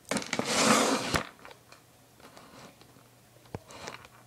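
Handling noise: a loud scraping rustle lasting about a second, then a few faint clicks and one sharp click near the end, as the iPod in its bulky case and the plastic figure are handled close to the microphone.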